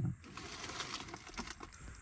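Faint scattered light clicks and ticks over low room noise.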